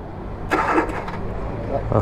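Car's starter cranking the engine as it is tried on a portable jump starter because of a flat battery: a steady low hum with a short noisy burst about half a second in.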